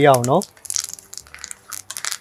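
Curry leaves crackling and spitting in hot oil in a dark pan: a quick, uneven run of small pops and sizzle that starts about half a second in, as a voice stops.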